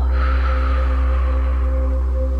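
A long breath out through the mouth, a soft airy hiss that fades away over about a second and a half, over a steady low ambient music drone.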